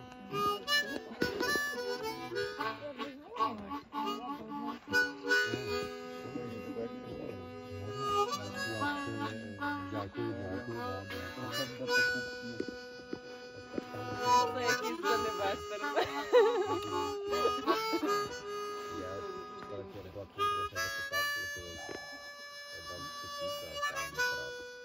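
Harmonica played cupped in both hands: a slow, free-flowing tune of held notes and chords that shift every second or two.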